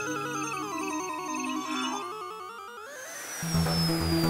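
Cartoon soundtrack: a wobbling electronic sci-fi tone sinks in pitch and climbs back up, then a falling whistle near the end. About three and a half seconds in, bass-heavy music comes in.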